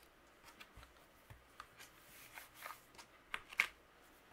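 Faint handling of clear acrylic stamps and paper in a plastic stamping positioner: scattered light taps and rustles, with two sharper clicks near the end as the positioner's hinged clear lid is closed.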